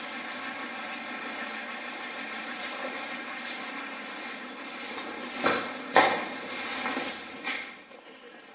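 Steady hum and hiss of a handheld camera's running sound, with a few sharp knocks; the loudest comes about six seconds in, another just before it, and one more near the end.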